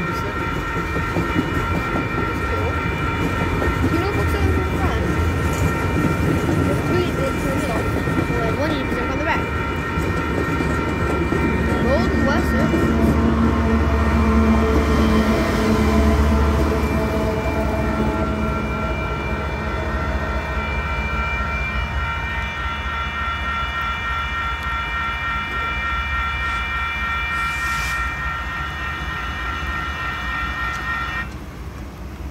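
Freight train rolling past with wheels clattering on the rails. A Union Pacific diesel locomotive passes in the middle, its engine rumble strongest from about 12 to 17 seconds in. A grade-crossing bell rings steadily over it.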